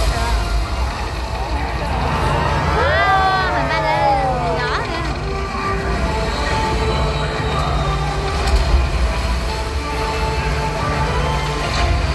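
Loudspeaker soundtrack of a night-time multimedia water show: sustained music over a deep, steady bass rumble, with a voice crying out in long sweeping glides, rising then falling, between about three and five seconds in.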